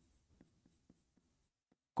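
Faint scratching and a few soft ticks of a stylus writing on an interactive display screen.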